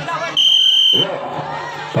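Referee's whistle: one short, steady, high blast of about two-thirds of a second, starting about a third of a second in.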